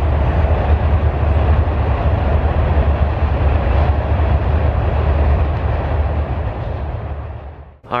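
Freight train rolling past: a loud, steady, deep rumble of the cars on the rails, fading out near the end.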